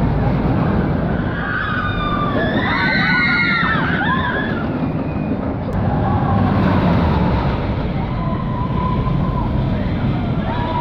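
Steel roller coaster train rumbling along its track with riders screaming, the screams loudest and most overlapping about two to four seconds in; a second train's rumble and more drawn-out screams follow in the second half.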